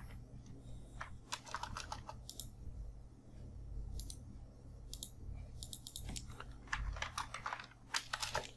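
Computer keyboard keys tapped in short irregular bursts of typing, with brief pauses between the bursts.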